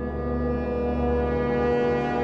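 A long, sustained, low horn-like musical tone over a deep drone, swelling slowly: a musical transition sting between segments.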